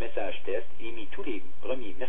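A voice broadcast from a weather radio's speaker, reading Weather Radio Canada's monthly alert test message, most likely its French part. It talks continuously, with a thin, narrow radio sound that has nothing above the middle treble.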